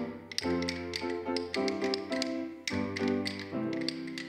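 Children's classroom percussion ensemble: wooden rhythm sticks and hand drums tapping out a rhythm over pitched notes from mallet-struck wooden bass bars and accompanying music.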